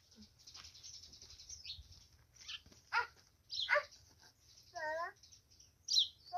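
Birds calling: faint high chirping in the first couple of seconds, then two quick calls sweeping downward about three seconds in, and a short warbled call near the end.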